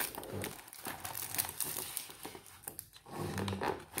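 A clear plastic packaging bag crinkling and rustling as it is handled and set down, in a quick irregular patter of small crackles.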